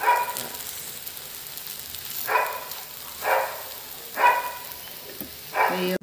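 A dog barking: four short barks, the last three about a second apart, over a low sizzle from a pancake frying in the pan.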